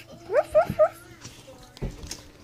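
A dog giving short, rising whines: one at the very start and three more in quick succession about half a second in. A soft low thump follows near the end.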